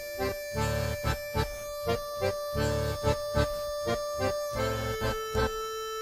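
Background music with held, sustained chords over a steady, even beat.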